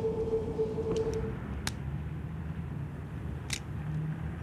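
Low rumble of city street traffic with a steady mid-pitched hum that cuts off about a second in, and a few sharp clicks scattered through.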